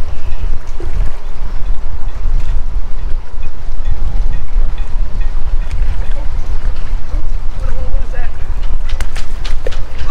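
Strong wind buffeting the microphone, a loud steady low rumble. Near the end comes a short run of sharp splashes as a hooked black drum is pulled up out of the water.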